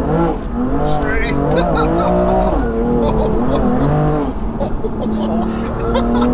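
Twin-turbo straight-six of a stage 3 tuned BMW M2 Competition, fitted with upgraded TTE turbos and making about 710 bhp, pulling hard at full throttle in fourth gear, heard from inside the cabin. The occupants laugh and exclaim over it.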